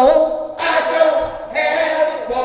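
Small church choir singing, voices holding long notes, with short breaks between phrases.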